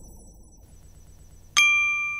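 A single bright, bell-like chime struck about one and a half seconds in, ringing on and slowly fading, as a logo sound effect. Before it, the last of the background music dies away.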